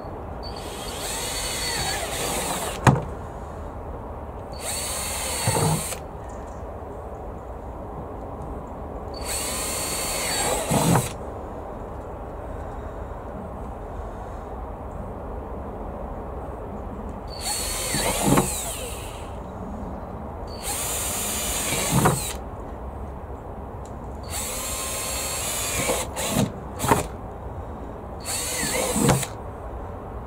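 Cordless drill boring drainage holes through the bottom of a plastic tub: about eight short bursts of drilling, each a second or two long, with pauses between, each burst ending as the motor winds down.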